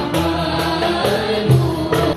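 Live Algerian Haouzi ensemble: singing over oud, qanun and violin, with a deep drum stroke about one and a half seconds in.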